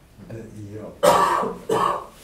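A person coughing twice in quick succession, loudly and harshly, just after a few spoken words.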